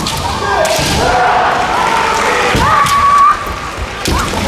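Kendo fencers' kiai: long, drawn-out women's shouts that glide in pitch, the loudest held high near the end, with thuds of bare feet stamping on the wooden floor.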